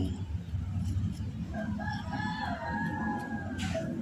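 A rooster crowing once, one long call starting about a second and a half in, over a steady low hum, with a short hiss just before the end.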